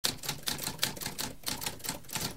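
Typewriter keys clacking in a quick run of strikes, about five a second.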